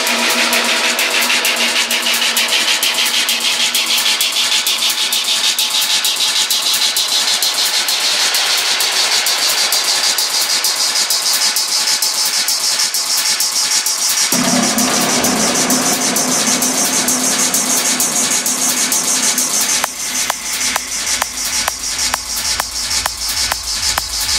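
Dark techno in a continuous DJ mix, in a breakdown: the kick and bass are cut and a rising sweep climbs slowly over fast, steady hi-hats. A deeper synth layer comes in a little past halfway, and the low end returns with a pulsing beat near the end, bringing the track back to full drive.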